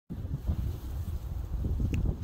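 Wind buffeting the microphone: an uneven low rumble, with a faint click just before the end.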